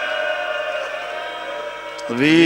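A man's long held chanted note through a public-address loudspeaker system, steady in pitch and slowly fading away.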